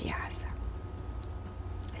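A woman's voice trailing off softly at the end of a phrase, then a pause with only a steady low hum underneath.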